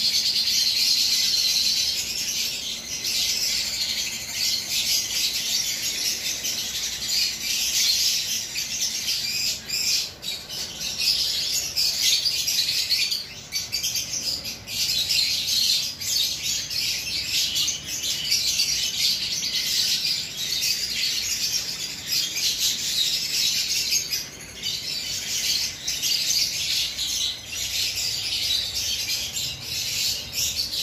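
Many small aviary birds chirping and twittering together in a dense, continuous high-pitched chatter.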